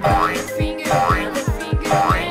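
Upbeat cartoon background music with a steady beat about twice a second. Over it, a cartoon jump sound effect, a quick rising glide, plays at the start and again near the end.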